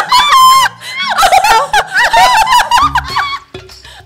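Two women laughing hard and shrieking, with background music playing underneath; the laughter breaks off briefly about three and a half seconds in.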